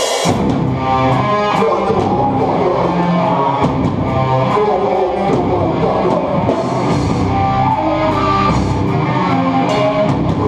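A live hardcore band, with guitars and drum kit, playing loud and dense; the song kicks in abruptly at the start.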